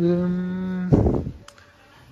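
A man's voice drawing out the word "here" in one long, level note for about a second. It is followed by a short rough noise, then only faint store background.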